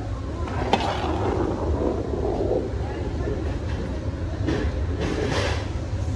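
Long-handled metal shovels scraping along a giant iron wok and turning a heavy load of stir-fried cabbage and pork, over a steady low rumble. There is a sharper scrape about a second in and a few more near the end.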